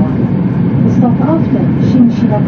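Steady running noise of an E2-series Shinkansen heard inside the passenger cabin, with indistinct conversation from nearby passengers. The train is running at reduced speed under a provisional timetable.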